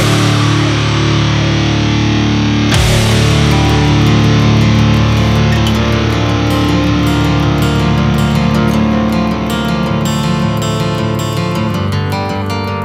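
Instrumental passage of a melodic death metal track, led by distorted electric guitars, with a sharp hit about three seconds in. Near the end the sound thins slightly into a quicker, clipped rhythmic pattern.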